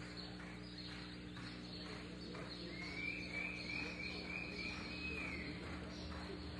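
Horse cantering on soft arena sand, its hoofbeats faint soft thuds over a steady hum. About halfway through, a run of about six short, high, repeated chirps lasts about three seconds.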